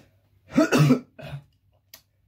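A person coughs into the crook of his elbow: one loud cough about half a second in, then a shorter, weaker one.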